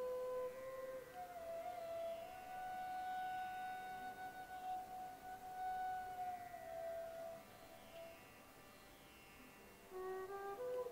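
Soft instrumental background music: a slow melody that settles on one long held note for several seconds, then goes quieter near the end.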